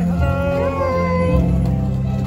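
Music with a steady low bass and a high, sliding melody line in the first second.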